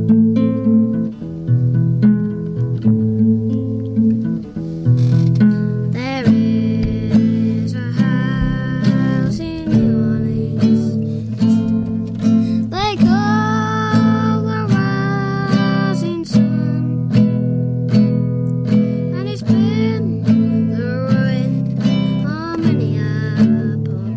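Acoustic guitar music: strummed and picked chords played at a steady pace, with a higher held melody line coming in twice.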